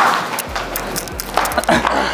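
Voices shouting and laughing, with a few quick slaps of bare feet running on a concrete floor.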